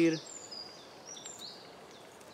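Small birds singing faintly in the background: a few short, high whistled notes and chirps, some sliding down in pitch, over a light outdoor hiss.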